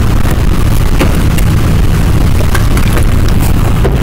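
Loud, steady low rumble from a faulty microphone, with a few faint clicks.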